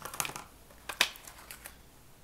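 Paper and card stock being handled: light rustling of a folded pop-up card with a few small clicks, the sharpest about a second in, as a pencil is brought to the paper.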